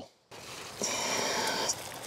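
Rustling of verbena stems being handled and cut back, a dry swishing that lasts about a second, with a few light clicks near the end.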